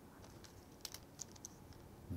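Near silence with a few faint, light clicks about a second in, from a stylus tapping on a tablet screen.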